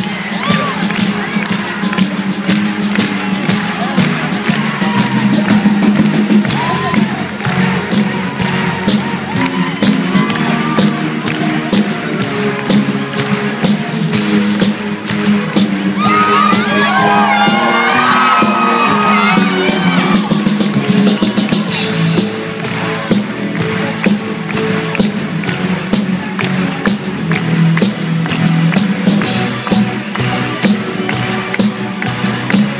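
Live band playing with drums and electric guitar while the audience cheers and whoops, the cheering swelling about two-thirds of the way through.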